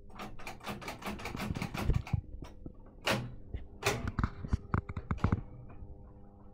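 Reel-to-reel tape recorder's transport mechanism clicking and clattering as it is worked by hand: a fast run of clicks for about two seconds, then separate sharp clicks and knocks, over a low steady hum. Its rubber drive band is snapped and the others are slack and worn, so the reels are not driven properly.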